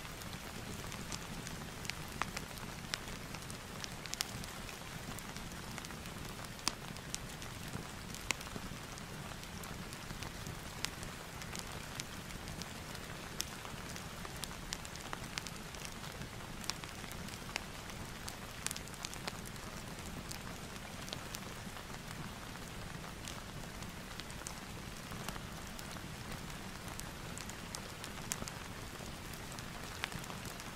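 Steady rain blended with a crackling fireplace: an even hiss of rain with scattered sharp crackles and pops at irregular intervals.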